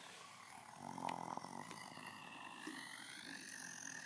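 A child's voice making monster noises for a toy alien: a short low growl about a second in, then a long high wavering screech.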